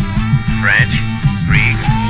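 Hip-hop interlude track: a looping bass line with short, high, quack-like squawks over it, about twice in two seconds.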